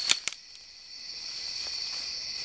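Steady high-pitched chorus of night insects, with two sharp clicks right at the start.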